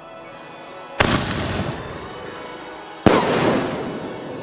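Two loud firework bangs from an aerial shell, about two seconds apart, each trailing off in a noisy decay, over background music.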